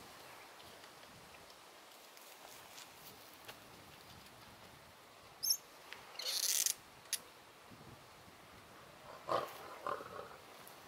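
Lions at a Cape buffalo kill heard from a distance over faint outdoor background: a short hissing snarl about six seconds in and two brief growls near the end, with a couple of sharp clicks between.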